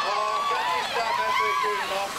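A race commentator's voice talking on, loud and unbroken, just after calling the sprint finish, over a steady haze of outdoor background noise.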